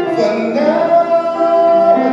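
Live solo singing with piano accompaniment; the voice moves into one long held note partway through and sustains it.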